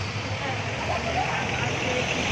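Street background noise: a steady hum of passing traffic and engines, with faint voices of people nearby.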